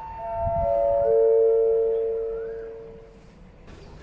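Railway station public-address chime: four bell-like notes stepping down in pitch, each ringing on over the last, the lowest the loudest, fading out after about three seconds.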